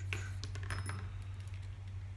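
Light metallic clicks and a brief ring from the small metal parts of a paintball marker's receiver as its valve is pushed out of the housing, the clicks bunched in the first second, over a steady low hum.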